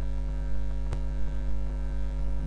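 Steady electrical mains hum with a stack of harmonics, with a single sharp click about a second in.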